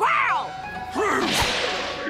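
Cartoon sound effects: a falling whistle-like glide, then about a second in a sudden whip-like swish, as a volley of swords flies through the water.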